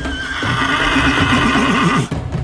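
A horse whinnying: one long neigh that breaks into a fast, wavering quaver near the end.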